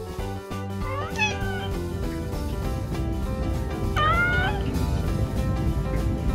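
Domestic cat meowing twice, two short calls about three seconds apart, each rising and then falling in pitch, over background music.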